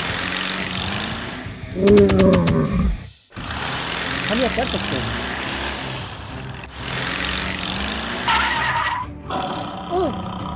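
Dubbed car engine and tyre sound effect, a steady noisy drive sound broken by a short cut-out about three seconds in. A louder pitched burst comes about two seconds in.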